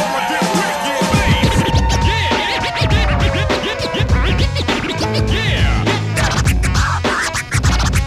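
Hip-hop DJ mix with turntable scratching: short pitch sweeps over long falling glides. A heavy bass beat comes in about a second in and settles into a steady drum rhythm.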